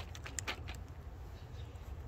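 A few light clicks from a carabiner on a rope being handled, a sharp one at the start and several smaller ones within the first second, over a steady low background hum.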